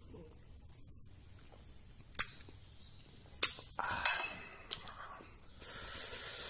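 Two sharp clicks of a metal spoon about a second apart, then a short breathy rush of a man breathing out and a softer click. A steady breathy hiss comes near the end as he swallows a spoonful of pungent raw garlic, onion and lime juice.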